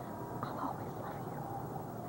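A soft, breathy whisper from a woman about half a second in, over a steady low background noise.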